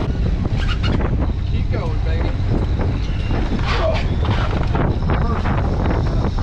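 Steady low wind rumble on the microphone aboard an open fishing boat at sea, with people calling out over it.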